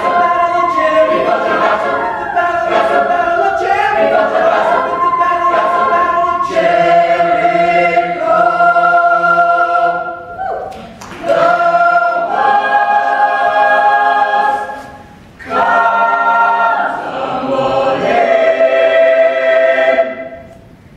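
Mixed-voice chamber choir singing a cappella, holding full sustained chords, with two brief breaks about ten and fifteen seconds in.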